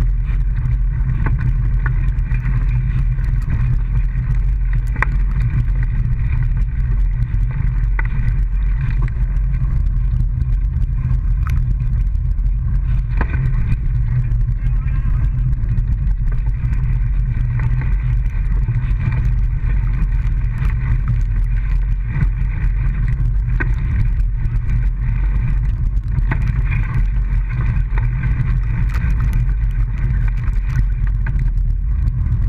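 A small motor vehicle's engine running steadily at an even speed: a constant low drone with fixed higher tones, and a few short knocks along the way.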